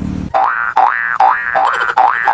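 Cartoon boing sound effect repeated in a quick run, about two and a half a second, each one a short rising tone.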